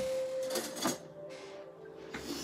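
Soft relaxing background music with a long held tone, under rustling and handling noises in the first second as things on a desk are moved about.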